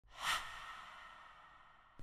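A single soft, breathy whoosh that peaks just after the start and fades away over about a second and a half.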